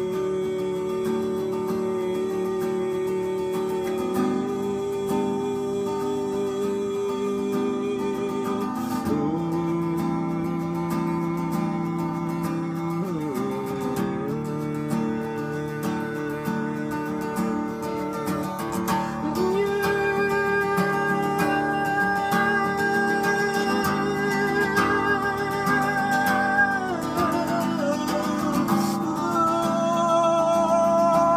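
Acoustic guitar strummed in a steady chord pattern, with long wordless sung notes held over it.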